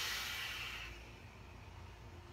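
A hard pull on a rebuildable vape atomizer fired from a custom 4S LiPo PWM box mod at a 0.14-ohm coil: a loud, airy hiss that fades out about a second in as the cloud is blown out.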